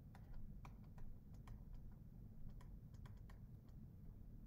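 Faint, irregular clicks of a pen stylus tapping and writing on a tablet screen, a few a second, over a low steady background rumble.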